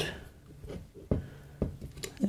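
Hands working at the tachometer coil end of a washing machine motor, making a few short clicks and knocks on the metal housing, starting about a second in.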